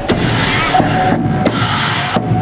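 Klong sabatchai, the Lanna ceremonial drum ensemble, playing a fast, dense run of drumbeats with a steady ringing tone held above them.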